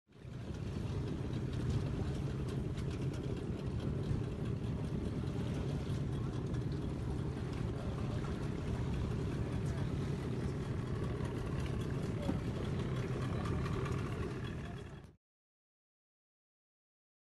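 A boat's outboard motor running steadily, a low even hum, fading out shortly before the end.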